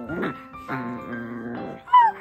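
Small dogs vocalizing in a tussle over a chew bone, ending in a short, high yip that falls in pitch, over background music.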